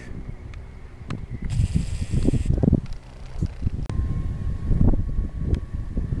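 Wind buffeting the microphone in irregular low gusts. There is a brief hiss about one and a half seconds in, and a click near four seconds in, followed by a faint steady high tone.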